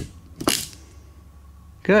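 Hand crimping tool closing on a terminal pin: a sharp click right at the start, then a louder snap about half a second in as the crimp completes and the jaws release.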